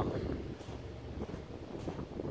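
Low wind rumble on the microphone, with faint footsteps on gravel.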